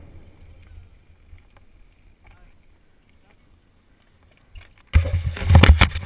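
Faint low wind rumble on a helmet-mounted action camera, then, about five seconds in, a loud burst of close rubbing and knocking as the camera is handled.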